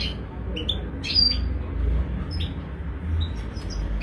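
Caged European goldfinch chirping: short, scattered tweets, with a slightly longer call a little after a second in, over a low steady hum.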